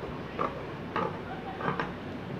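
Scissors snipping through cotton fabric to trim off excess cloth, a short crisp cut roughly every half second, three or four cuts in all.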